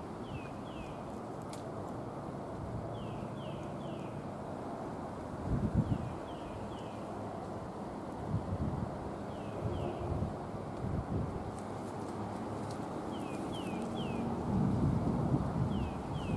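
A bird calling in short falling whistled notes, in twos and threes every few seconds, over a steady low outdoor rumble with a few soft low bumps.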